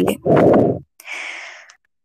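A woman's spoken word ends, then about a second in she breathes out audibly in a short sigh that fades.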